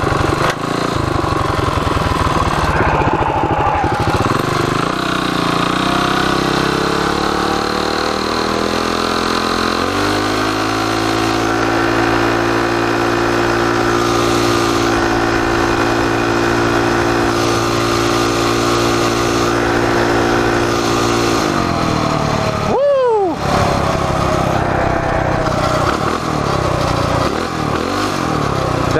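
Coleman CT200U-EX minibike's single-cylinder four-stroke engine pulling hard under throttle, now geared through a 9-tooth jackshaft and 60-tooth rear sprocket. The engine note climbs for about ten seconds, holds a steady high pitch for about twelve more, drops off sharply with a quick swoop, then climbs again near the end.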